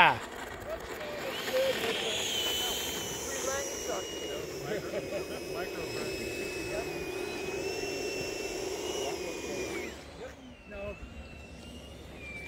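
Electric ducted-fan whine from a radio-controlled Freewing F-22 model jet rolling on the runway after landing. It is a steady high whine that wavers slightly and stops about ten seconds in.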